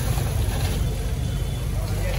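Steady low rumble of a motor vehicle engine running nearby, under an even background hiss.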